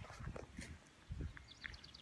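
Quiet woodland ambience with a few soft low thumps about a second in, then a short, rapid high chirping trill near the end.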